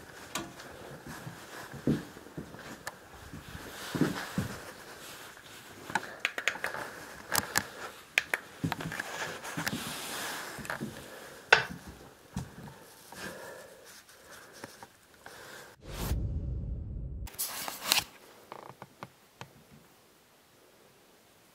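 Scattered clicks, taps and rustles of handheld gear, a flashlight and camera, being handled, with a brief low rumble about sixteen seconds in.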